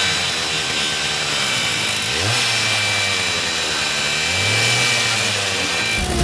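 Handheld angle grinder motor running with a steady high whine. Its pitch climbs quickly twice, about two seconds in and again just past four seconds, and holds after each rise.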